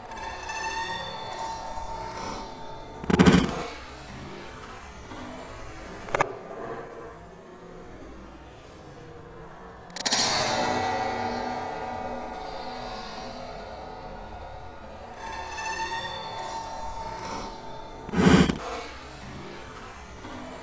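Inline skates grinding a metal handrail, the rail ringing with a pitched tone, with a heavy landing thud about three seconds in and again near the end. About halfway a louder grind starts suddenly and rings out slowly.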